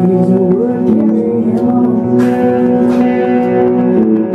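Live music: an electric guitar played through effects pedals, with steady, long-held tones layered underneath.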